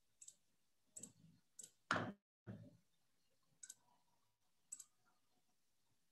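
Faint, scattered clicks at a computer, about seven of them, with one louder click about two seconds in, against near silence.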